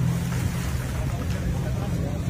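A motor vehicle's engine running with a steady low hum, under a rushing noise of wind and water.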